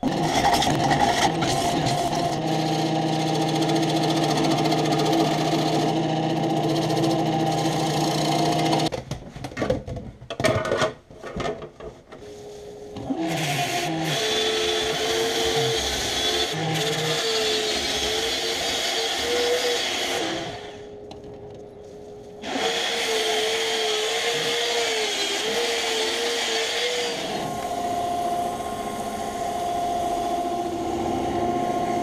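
Wood lathe running with a walnut bowl spinning on it, first with a bowl gouge cutting the outside to true up the warp left from drying. After a few seconds of knocks and clatter, sandpaper is held against the spinning bowl, making a steady hiss that drops away for a couple of seconds and comes back.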